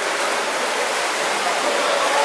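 Steady splashing and churning of water from water polo players swimming and fighting for the ball in a pool.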